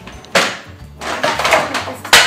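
Purple plastic toy carry case being unlatched and opened: a sharp plastic clack about a third of a second in, then a second of louder plastic handling noise as the lid swings open.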